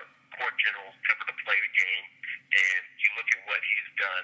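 Speech over a telephone line, with a faint steady hum underneath.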